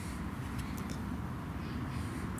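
Steady, low outdoor background rumble with a few faint clicks.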